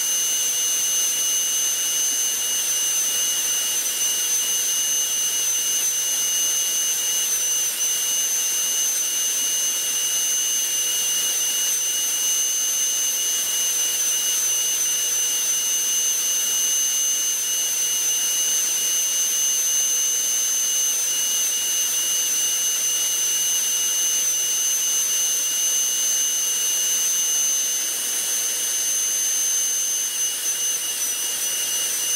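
High-speed rotary carving tool running steadily with a constant high-pitched whine as its bit cuts overlapping fish-scale shapes into a wooden .22 rifle stock, worked with a light touch.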